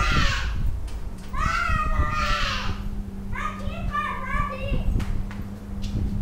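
Children's voices calling and chattering, high-pitched, in three short stretches, over a steady low hum.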